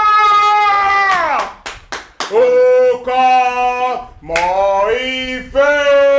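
A fan's voice singing loudly in long held notes, one sliding down in pitch about a second in. A few sharp claps come around two seconds in.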